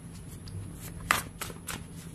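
Tarot cards being handled and shuffled by hand: a few short crisp card clicks, the loudest about a second in.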